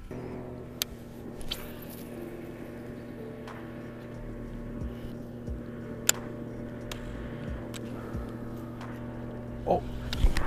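A steady low hum runs throughout, with a few sharp clicks from handling a baitcasting rod and reel, the loudest a little past the middle.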